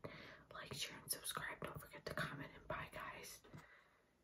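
A young woman whispering, stopping about three and a half seconds in.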